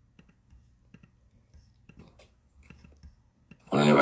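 A few faint, scattered clicks during a pause, then a man's voice starts speaking near the end.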